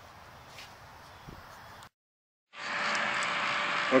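Faint background noise, then, after a brief break in the sound, a louder steady rushing hiss of the brewing rig's transfer pump running with water flowing through the hoses of the counterflow wort chiller.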